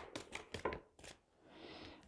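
A deck of tarot cards being shuffled by hand: a quick run of soft clicks that thins out and stops under a second in, followed by a faint soft rustle near the end.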